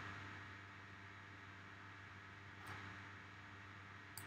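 Near silence: room tone with a low steady hum, and one faint mouse click about two and a half seconds in.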